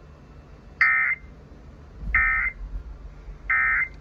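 Emergency Alert System end-of-message signal: three short bursts of digital SAME data tones, each about a third of a second long with about a second between them, played through a radio's speaker. They close a statewide Required Monthly Test.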